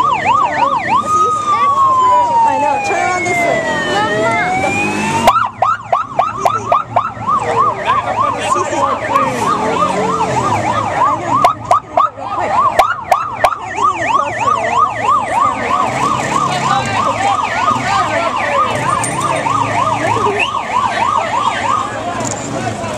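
Police sirens: a fast yelp overlapping a slow wail that falls and rises again. About five seconds in the wail drops out and the fast yelp carries on steadily, with a few sharp clicks partway through.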